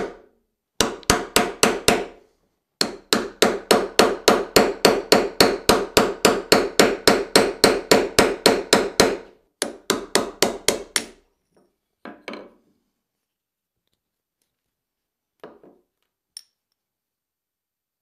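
Rapid hammer blows on a steel punch, driving the old wooden handle out of the eye of a ball-peen hammer head, each strike ringing metallically. They come about four or five a second in three bursts and stop about eleven seconds in, followed by a couple of lighter knocks.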